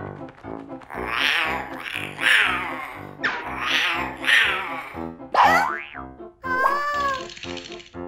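Playful cartoon background music with a steady beat, overlaid by comic sound effects: four sweeping swooshes in the first half, then a quick rising glide and a wobbling boing near the end.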